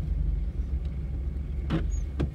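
Car engine idling, a steady low rumble heard from inside the cabin, with a brief short sound near the end.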